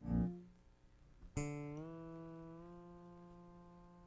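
Solo electric bass guitar. A short note dies away at the start, then a ringing note is struck about a second and a half in, and its pitch rises in two small steps as it sustains.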